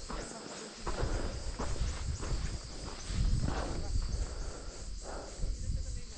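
A steady, high-pitched chorus of insects chirping in the hillside scrub, over a low, uneven rumble of wind on the microphone.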